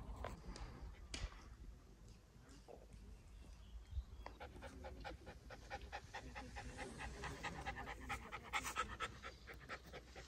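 Puppy panting quickly and evenly, most clearly in the second half.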